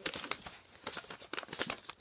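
White tissue paper crinkling and rustling in quick, irregular crackles as it is handled to unwrap a present.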